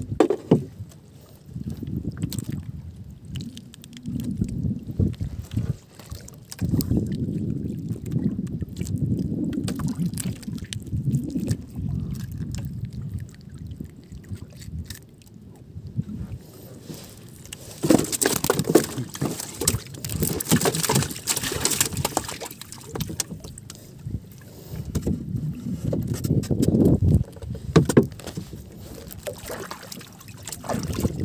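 Water sloshing around a small outrigger boat's hull, with wind buffeting the microphone in slow surges; a louder rushing of water noise about two-thirds of the way through.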